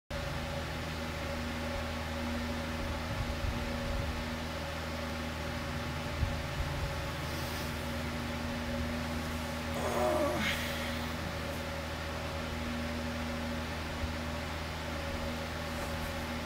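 Steady low mechanical hum of a room appliance, with a few fixed tones in it, as from a fan or air conditioner running in a small bedroom. About ten seconds in, a short sound sweeps upward in pitch.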